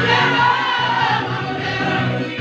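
Gospel praise song sung by a group, led by a woman's voice on a microphone through a loudspeaker, over steady sustained low backing notes.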